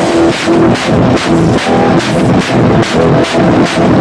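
Drum kit played hard in a steady, fast beat, with cymbal strokes about three or four times a second, along with electronic music that carries a stepping melody.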